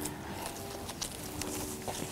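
Fingers scuffing and teasing out the roots of a pot-bound plant's root ball: a few scattered soft rustling crackles of roots and compost.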